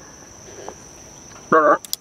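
Steady high-pitched insect chorus, with one short vocal sound from a man about a second and a half in.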